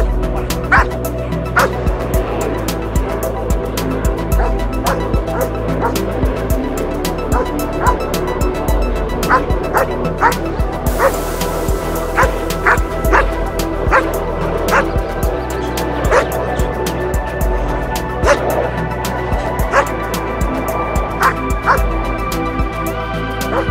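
Background music with a dog barking in short barks at irregular intervals over it.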